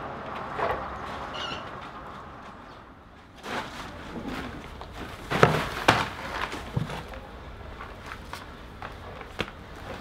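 Heavy slabs of solidified clay set down onto a heap of clay blocks: two dull thuds about five and a half seconds in, followed by a few lighter knocks and shuffling.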